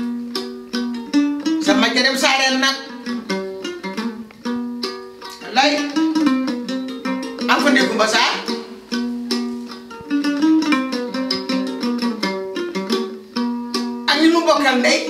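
Background music of a plucked string instrument playing a quick, continuous run of picked notes, under a woman's voice that comes in short spells.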